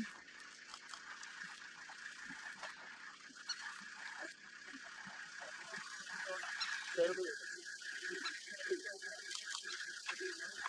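A herd of wildebeest calling, a chorus of short nasal grunts that grows busier in the second half, over a steady high drone.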